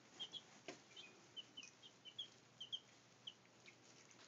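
One-week-old Brahma chicks peeping: a quick, uneven string of about a dozen short, high chirps, with a few faint clicks in between.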